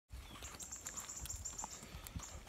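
Rural outdoor ambience: a bird trilling high and steadily in short pulses over a low rumble.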